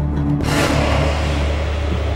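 Background music score: a steady low drone, with a rushing swell that comes in about half a second in and carries on.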